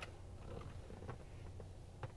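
Quiet room tone inside a pickup cab: a faint steady low hum with a few soft clicks around the one-second mark.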